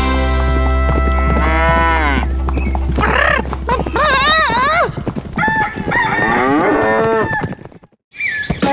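End of an animated children's farm song: a held low music note runs under cartoon animal calls whose pitch slides and wavers. The note stops about five seconds in, and the calls give way to a short silence just before the end.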